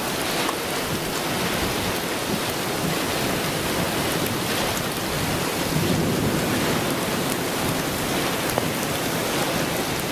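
Heavy wind-driven rain and extreme storm winds from a tornado-warned thunderstorm: a loud, steady wash of noise with many small hits of rain.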